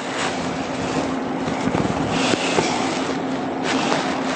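Chalk scraping on a blackboard as lines are drawn, a few short strokes over a steady hiss of room noise with a low hum.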